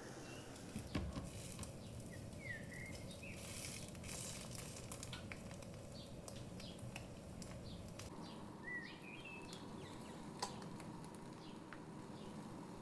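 Small birds chirping in short, sliding calls in the background, over faint sizzling of the frying pan, with a couple of sharp clicks, likely a metal spoon against the pan, about a second in and near the end.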